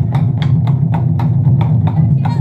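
Taiko drum ensemble playing: an even run of sharp stick strokes on the drum heads, about four a second, over a loud, continuous deep rumble.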